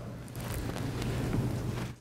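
Steady background hiss with a low hum underneath: the room noise of a lecture hall.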